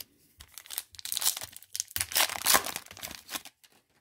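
Wrapper of a 2019 Panini Rookies & Stars football card pack being torn open and crinkled. It is a run of crackling rustles lasting about three seconds, loudest in the middle.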